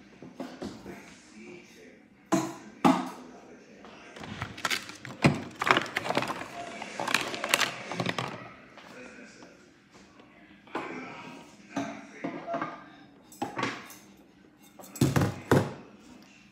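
Plastic toy kitchen pieces being handled, giving an irregular run of knocks, thunks and clatters.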